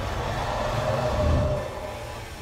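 Film soundtrack of a woodland chase: a chainsaw engine running steadily under background score, easing off slightly near the end.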